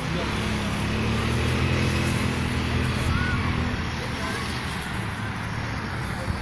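An engine running steadily with a low hum that swells over the first couple of seconds and fades out about four seconds in, over outdoor background noise.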